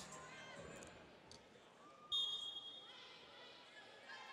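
Faint gym background noise. About two seconds in, a referee's whistle gives one shrill, steady blast that fades away over about a second.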